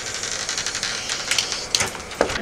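Irregular sharp clicks and taps over a steady hiss, with a cluster of clicks near the end.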